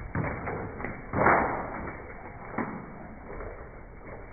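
Wet pug moving about in a bathtub: a few thumps and scuffs of its body against the tub, the loudest just over a second in.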